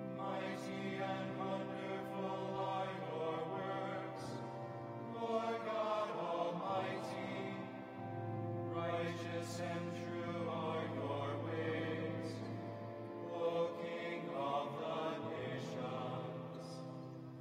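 A small men's choir singing a chant, several voices moving together over a steady held low note that drops to a lower pitch about halfway through.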